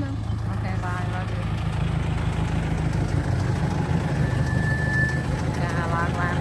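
Car engine running, a steady low rumble, with a brief high-pitched tone about four seconds in.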